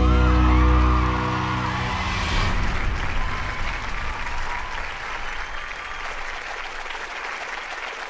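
A rock song ends on a held chord that dies away within the first two seconds, followed by audience applause that slowly fades.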